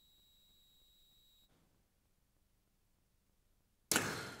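Near silence: a faint, high, steady tone that cuts off about a second and a half in, then a brief hiss of room noise near the end.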